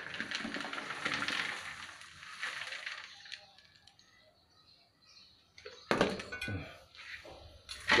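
Dry animal-manure pellets poured from a woven basket into a pot of growing medium: a rustling, pattering slide that lasts about three seconds and dies away. A couple of sharp knocks follow about six seconds in.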